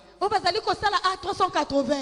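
Speech only: a man preaching, with a short pause at the very start.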